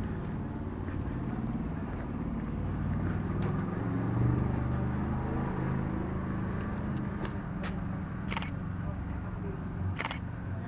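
A motor vehicle engine running steadily with a low hum, with a few sharp clicks between about seven and nine seconds in.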